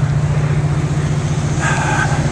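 A car engine running close by, heard as a steady low hum.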